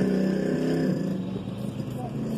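A motor vehicle engine running with a steady drone that eases off and fades after about a second.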